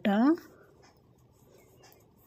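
Faint scratching of knitting needles and yarn as three stitches are purled, after a woman says one word at the start.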